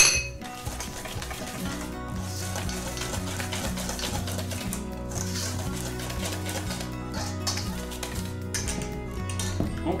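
Wire whisk scratching and swishing through dry flour in a stainless steel bowl, in uneven strokes over steady background music.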